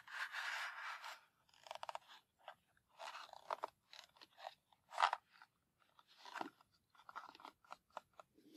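A cardboard strike-on-box matchbox drawer slid shut over loose wooden matches in the first second, then fingernails scratching and tapping on the printed cardboard box in short, uneven bursts, with a sharp tap about five seconds in.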